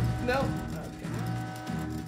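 Online slot game music: held notes sounding together as a chord over a steady low drone.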